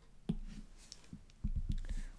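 A few soft clicks and taps of fingers on an iPad touchscreen, spread irregularly, with some duller low taps in the second half.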